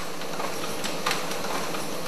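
Pharmaceutical blister-packing machine running: a steady mechanical clatter from its rollers, with a few faint clicks.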